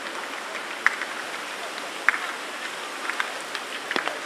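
Light rain: a steady hiss with scattered sharp ticks of drops, the loudest about a second and two seconds in.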